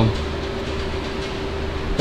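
Steady background drone: a low rumble with one constant humming tone and an even hiss, unchanging throughout.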